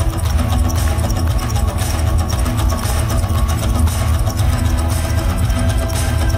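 Live band playing an instrumental passage with no vocals: heavy bass guitar and a drum kit with regular cymbal strokes, loud and steady, in a large reverberant hall.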